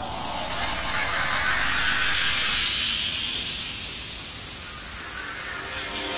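Grainy electronic noise texture from an electroacoustic intro, a clicking, hissing sweep whose brightness rises over the first few seconds and then fades a little.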